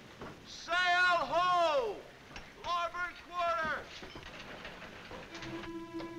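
Seagulls crying: two long rising-and-falling calls about a second in, then a quicker run of calls around three seconds in. Soft film score notes come in near the end.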